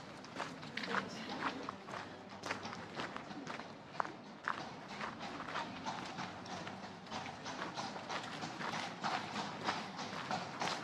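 Horse hooves clip-clopping on pavement, an irregular run of sharp knocks several times a second.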